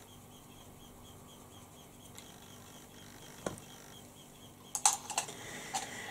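Quiet room tone with a faint, even ticking in the first half, then a single click and, about five seconds in, a quick cluster of sharp clicks as makeup brushes are handled.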